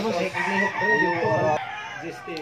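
A rooster crowing once: one long call that cuts off sharply about a second and a half in.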